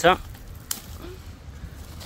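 A watermelon's stem snapping as it is broken off the vine by hand: one short, sharp crack about two-thirds of a second in.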